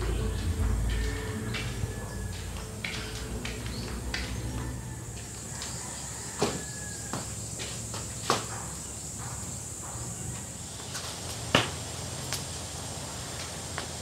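Wood and dried fronds being loaded into a furnace as its fire catches: scattered clicks and knocks, with three sharper snaps in the second half over a faint steady hiss.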